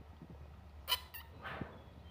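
A parrot gives two short, high calls about a second in, followed by a softer call.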